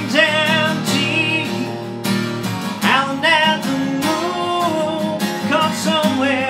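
Strummed acoustic guitar with a man singing along in long, wavering held notes.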